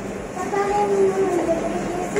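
Shop ambience: faint voices in the background, starting about half a second in, over a steady low hum.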